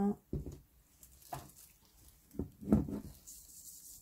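A few brief soft knocks and handling sounds as a spoonful of minced garlic goes into a glass mixing bowl of greens and the garlic container is set down. The loudest knock comes near three seconds in.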